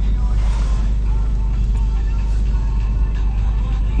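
Jeep Liberty engine idling at about 1000 rpm, a steady low rumble heard from inside the cabin, with music playing from the car stereo.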